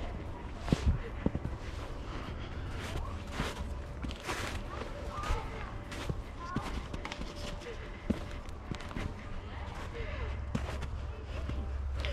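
Footsteps crunching in snow as someone walks, an irregular series of short crunches, with faint distant voices now and then.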